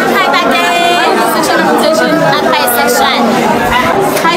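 Voices talking over each other, with background chatter throughout.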